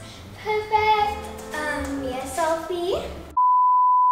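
A girl's voice in held, sing-song notes, then about three and a half seconds in a loud, steady 1 kHz test-tone beep cuts in abruptly: the tone that goes with TV colour bars.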